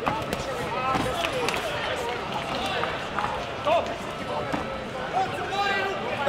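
Many voices talking and calling at once in a large hall, with several sharp thuds from the kickboxing bout in the ring.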